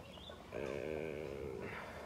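A man's voice drawing out a single long "and" for about a second, starting about half a second in; otherwise only faint background.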